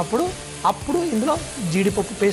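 Onion-tomato masala sizzling as it fries in a pan, stirred with a wooden spatula, with a person's voice over it.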